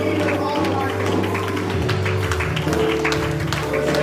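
Live church worship band playing soft, sustained music: electric bass holding long low notes that change twice, under steady keyboard chords, with voices praying over it.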